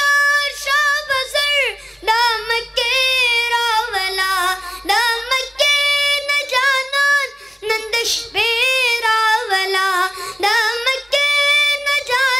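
A boy singing a Pashto naat unaccompanied into a microphone. His high voice holds long, wavering, ornamented notes in phrases of a few seconds, with short breaks for breath between them.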